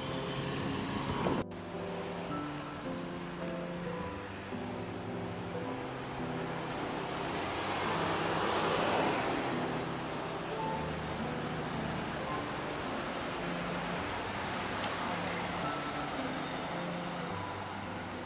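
Light instrumental background music with a slow, stepping melody, over road and traffic noise from a moving car. A vehicle passes about eight to nine seconds in, the loudest moment. There is an abrupt cut in the sound about a second and a half in.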